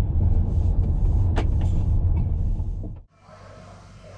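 Audi S3 on the move, heard from inside the cabin: a steady low engine and road rumble with a single brief click about a second and a half in. The rumble cuts off abruptly about three seconds in, leaving a much quieter background hiss.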